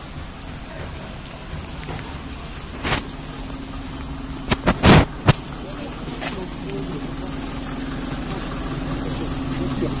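A motor vehicle engine idling steadily, with one sharp knock about three seconds in and a quick run of four louder knocks around the middle.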